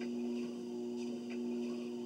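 Treadmill running under a walker: a steady two-pitched hum, with a few faint light ticks from the steps on the belt.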